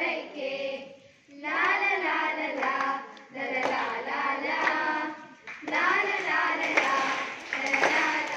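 A group of children singing together in chorus, phrase after phrase with short breaths between, with a few hand claps along with the song.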